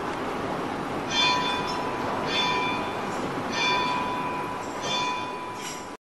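A metal bell struck four times at an even pace, about one strike every 1.3 seconds. Each note rings on into the next, over a steady hiss.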